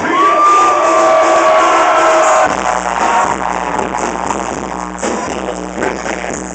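Loud live rap music over a club PA. A held high tone sounds over the first couple of seconds, then a steady bass line and beat take over.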